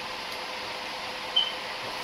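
Steady whooshing hiss of computer cooling fans running, with a faint hum, and one brief high squeak about one and a half seconds in.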